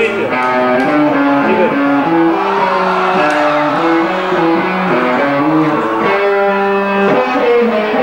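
Live rock band's electric guitars and bass guitar playing a melodic line of sustained notes, one after another, without drums.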